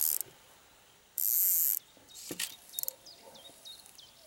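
Fly-fishing rod, reel and line in use during casting: a loud, even hiss lasting about half a second starts a little over a second in, followed by a few sharp clicks.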